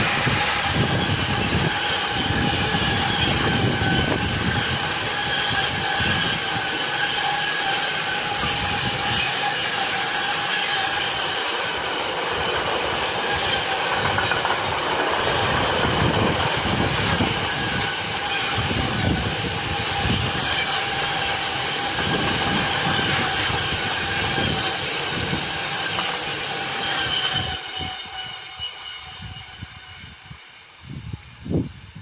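Freight train of intermodal container wagons hauled by electric locomotives passing close by: a steady rumble and clatter of wheels on the rails with a sustained high whine over it. It fades quickly near the end as the last wagon goes by.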